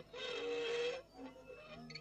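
Pepelats interplanetary craft sound effect for its first appearance: a pitched, buzzy tone with a hiss over it. It holds one long note for about a second, then breaks into shorter, quieter notes.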